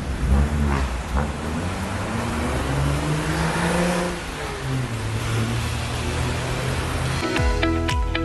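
Road traffic with car engines whose pitch slowly rises and falls, under music; the music turns fuller and louder about seven seconds in.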